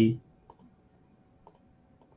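Two faint computer mouse clicks, about a second apart.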